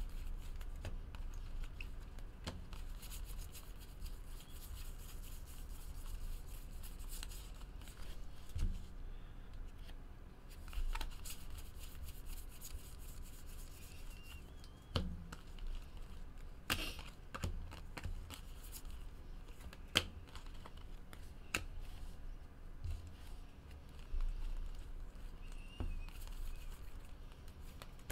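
Baseball cards being flipped through by hand: faint rustling of card stock sliding across card, with scattered sharp clicks as cards snap past one another, over a low steady hum.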